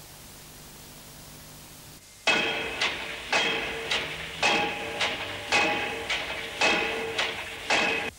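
Repeated metallic clanks, each ringing on with the same pitched tone, about two a second in a steady rhythm. They start about two seconds in, after faint hiss.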